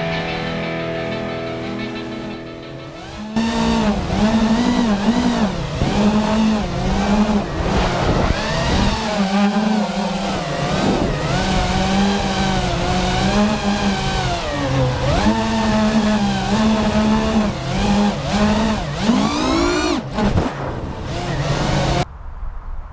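Music fades out over the first three seconds. Then come the high whine of a 5-inch FPV racing quad's brushless motors (Rctimer FR2205 with 4-blade props), recorded on board, rising and falling in pitch over and over as the throttle is worked in flight.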